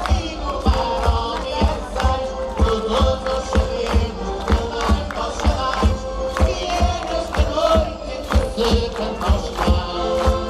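Live amplified folk music for Cantar os Reis (the Madeiran Epiphany carolling): a group singing with instrumental accompaniment over a steady beat of about three low thumps a second.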